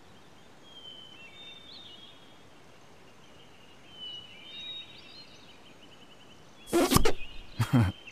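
Quiet outdoor ambience with faint, brief bird-like chirps now and then. A sudden loud, short burst comes about seven seconds in, followed by laughter starting just before the end.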